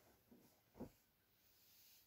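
Near silence in a small room: faint rustling of clothing being handled, with one brief soft sound a little under a second in.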